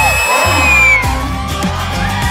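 A long, shrill, steady whistle that stops sharply about a second in, over background music and crowd whoops.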